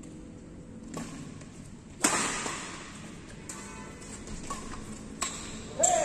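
Badminton rackets striking a shuttlecock in a doubles rally, sharp cracks echoing round a large hall. The loudest hit comes about two seconds in, with lighter taps at uneven gaps and another hard hit near the end.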